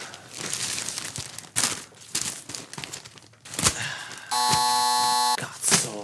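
Scattered clicks and rustling noises, then about four seconds in a steady buzzer tone sounds for about a second and cuts off abruptly.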